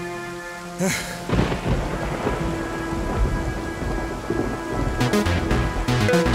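Film soundtrack thunder: a sudden crack about a second in, then a long low rumble with rain, over sustained background music.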